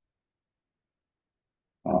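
Dead silence, with no room sound at all, then a man's voice begins near the end.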